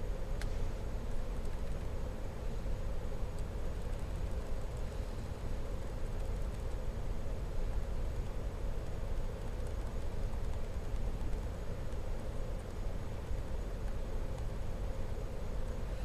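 Steady low background hum of room noise, with a few faint clicks from a laptop's trackpad and keys.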